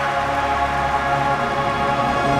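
Orchestra playing, holding sustained chords.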